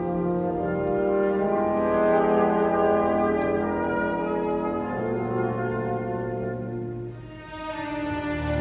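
Symphony orchestra playing slow, held chords, the harmony shifting about a second in and again about five seconds in, with a brief drop in loudness near the end.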